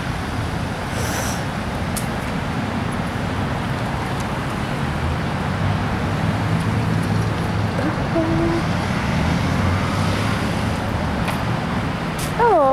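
Road traffic driving through an intersection: a steady hiss of tyres and engines, with a vehicle's engine growing louder about halfway through as it passes.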